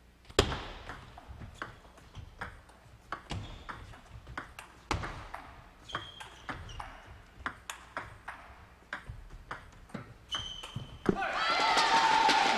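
Table tennis rally: the plastic ball clicking off the rackets and the table in quick alternation, a long exchange of about ten seconds.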